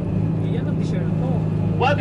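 Tour coach engine droning steadily, heard inside the cabin while it drives. Its pitch shifts down once right at the start, as with a gear change or easing off.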